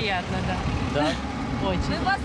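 Steady city street traffic noise, a low rumble of passing cars, with short fragments of a woman's voice over it.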